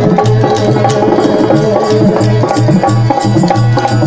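Rajasthani Langa folk music played live: a hand drum beats a quick, uneven rhythm over one steady held note.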